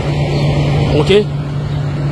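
A steady low engine hum with rumbling noise, like a motor vehicle running close by, under a man's voice saying a word or two about a second in.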